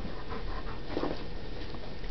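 A dog panting steadily.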